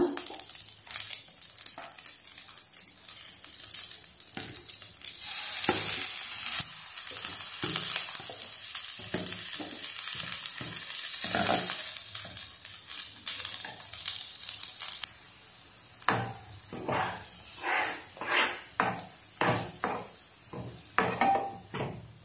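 Moringa leaves sizzling in a nonstick pan over a low flame, with a spatula stirring them. Batter is then poured in, and over the last few seconds the thick mixture is stirred in regular strokes, about two a second.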